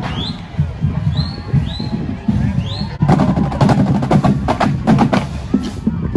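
Music with drums; about halfway through, a rapid flurry of sharp drum strikes.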